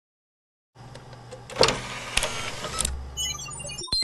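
Logo-animation sound effect: a mechanical sliding whir with three sharp clicks and a low rumble, as a card slides into a device. About three seconds in it gives way to scattered twinkling electronic blips.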